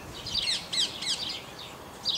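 A small bird chirping: a quick run of short, high, downward-sliding chirps in the first second, then fainter.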